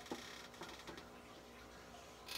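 A few faint clicks and taps in the first second, the sound of handling and rummaging among plastic toy figures, over a quiet steady room hum.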